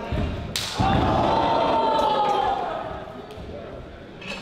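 A wrestling move landing hard in the ring: a sharp crack about half a second in, with a heavy thud on the ring boards as a wrestler is driven to the mat. Crowd voices follow the impact.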